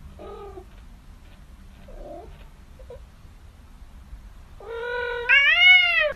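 Domestic cat meowing: a few faint short meows, then a loud, drawn-out yowl in two parts that rises in pitch near the end.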